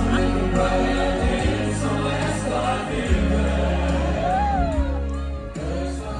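Live stage-show music with singing over a heavy bass. About four seconds in, a singer's voice slides down in pitch.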